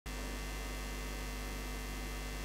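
Steady electrical mains hum: a low, even buzz with a few faint high tones above it.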